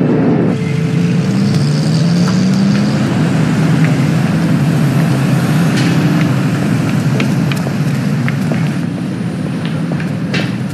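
City street traffic: cars and a city bus going by, one engine rising in pitch about two seconds in, with scattered short clicks over the steady noise.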